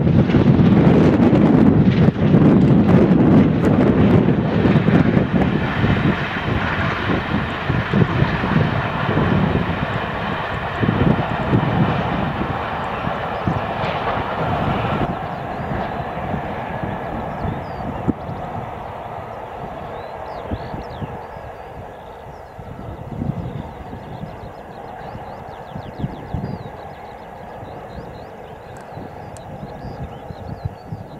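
GWR Castle class 4-6-0 steam locomotive and its train running at speed, passing and then fading steadily into the distance, with wind buffeting the microphone.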